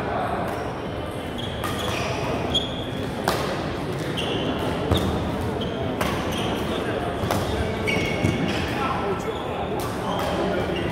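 Doubles badminton rally in a large echoing hall: rackets striking the shuttlecock in sharp knocks every second or so, with brief high shoe squeaks on the court floor, over a background of voices from the hall.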